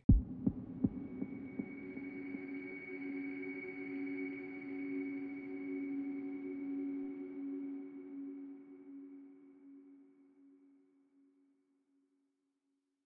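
Logo outro sound effect: a sharp hit and a few clicks, then a long held, droning tone with a fainter high ringing note above it, slowly fading away to silence about eleven seconds in.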